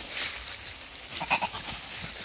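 An animal's call: a quick run of three short cries about a second and a quarter in.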